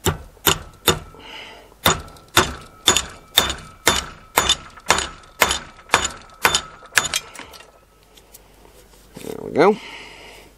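Hammer driving a wedge into the top of an axe eye to lock the head onto its handle: three quick taps, then steady blows about two a second, each with a short ring, stopping about seven seconds in.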